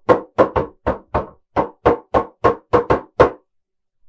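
Cardboard cereal box beaten with a wooden stick as a homemade drum: a steady, rhythmic run of about a dozen knocks, roughly three a second, that stops a little past three seconds in.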